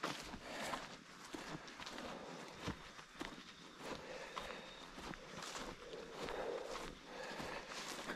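Faint footsteps of people walking over the forest floor: irregular soft steps, with one sharper click about two and a half seconds in.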